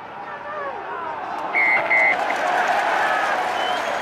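Rugby referee's whistle blown in two short blasts about a second and a half in, signalling a penalty for a crooked scrum feed. Stadium crowd noise swells around the whistle.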